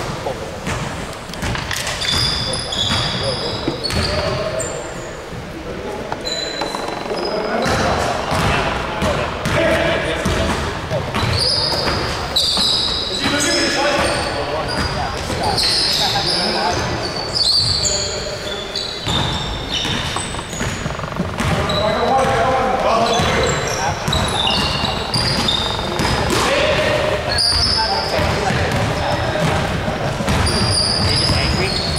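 Live indoor basketball play: a basketball bouncing on the hardwood floor, with sneakers squeaking sharply many times as players run and cut. The sound echoes in a large gym.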